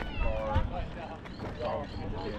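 Voices of people talking close by, including a high-pitched voice like a child's that slides down in pitch near the start, with footsteps on gravel.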